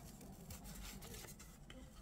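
Faint handling of a stack of cardboard trading cards: light rustling and small clicks as one card is slid off the stack to show the next, over low room tone.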